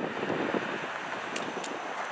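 Tyre and road noise of a Tesla Model X electric SUV driving past, with no engine sound, mixed with wind on the microphone.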